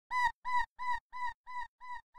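Opening of an experimental dubstep track: one short, bright synth note repeated about three times a second, each repeat quieter than the last.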